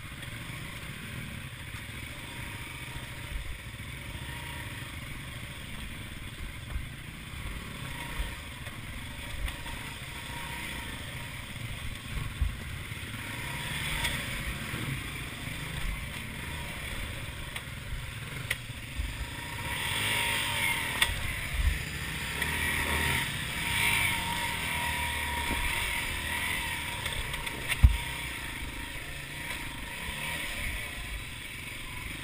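Dirt bike engine running at low revs as the bike picks its way over rock, with scattered knocks and clatter from the wheels and suspension striking stones. The engine gets louder for several seconds from about twenty seconds in, and there is one sharp knock near the end.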